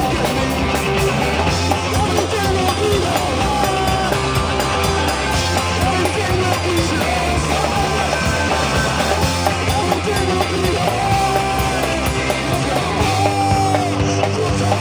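Three-piece punk rock band playing live: electric guitar, bass guitar and drum kit, loud and steady.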